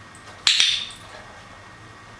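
A dog-training clicker gives one sharp, quick click-clack about half a second in, marking the dog touching the target post-it note with her nose.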